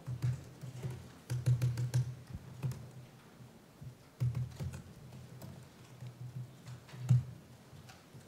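Typing on a computer keyboard in irregular bursts of keystrokes, each with a dull low thud, with short pauses between runs.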